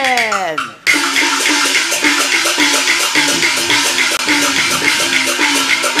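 A drawn-out sung call slides downward and ends, then just under a second in the Mianyang huagu opera accompaniment strikes up: fast, even percussion beats under a melody line.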